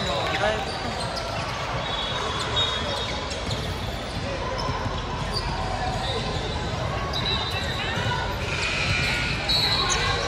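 Busy basketball-gym sound: overlapping chatter of players and spectators echoing in a large hall, with several short, high squeaks of sneakers on the hardwood court.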